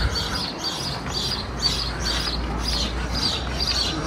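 Small birds chirping repeatedly, short high notes about two to three a second, over a low steady rumble.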